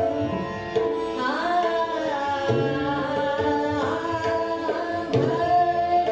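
Female voice singing a Hindustani classical khayal in Raag Bhairav, with long gliding phrases over a steady drone. Tabla strokes come in at intervals, one sharp stroke about five seconds in.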